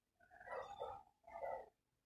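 Short animal calls, about three in two seconds, each a brief burst with quiet gaps between.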